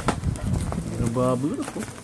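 Clear plastic air-column packaging rustling and clicking as it is handled, then a short drawn-out vocal sound from a voice about halfway through.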